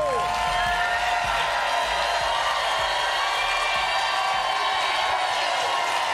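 Studio audience cheering, whooping and applauding steadily.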